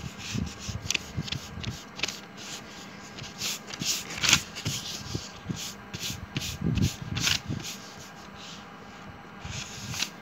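Eraser rubbing back and forth on paper in uneven scratchy strokes, rubbing out pencil outlines; the strokes ease off shortly before the end.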